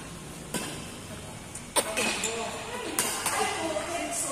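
Badminton racket strikes on a shuttlecock during a rally: four sharp hits about a second apart, the last two in quick succession near the end, with players' voices in between.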